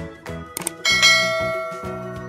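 Subscribe-button animation sound effects over background music: two quick clicks, then a bright bell chime a little under a second in that rings and slowly fades.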